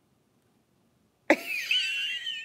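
About a second in, a woman bursts out laughing with a cough-like outburst that turns into a high, wavering, wheezy squeal.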